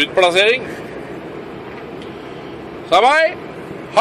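Steady engine and road noise inside a moving Scania truck's cab, broken by short voice outbursts with sliding pitch near the start, about three seconds in and at the very end.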